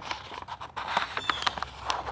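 A sheet of paper rustling as it is rolled and handled into a cone, with a few light crackles.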